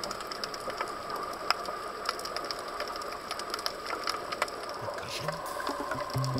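Underwater reef ambience picked up by the camera: a steady hiss with many irregular sharp clicks scattered through it.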